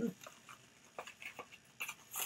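A few faint, short clicks and taps at uneven intervals, from handling a pair of new sandals and their packaging.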